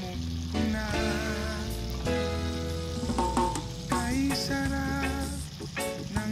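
Beef and broccoli stir-frying in a wok with a steady sizzle, heard under background music.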